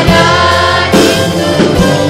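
Live gospel worship band playing: a group of voices singing a praise song together over keyboard, electric guitar and drums, with a few drum strokes.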